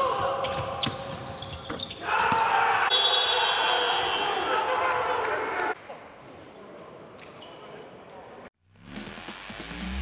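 Basketball game sounds in a large, nearly empty hall: a ball bouncing on the hardwood, sneaker squeaks and players' voices. For about four seconds in the middle a steady held tone sounds over the game noise, then only quieter hall noise remains. Near the end a whoosh rises into the start of the outro music.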